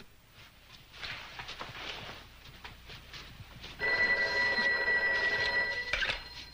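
Desk telephone bell ringing: one continuous ring about two seconds long, starting a little under four seconds in.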